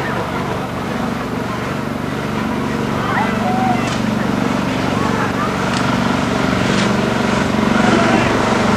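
A fire truck's engine running steadily, its level slowly rising, with people's voices and a few sharp clicks over it.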